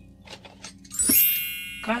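A bright chime sound effect about a second in, ringing and fading over about a second, over background music.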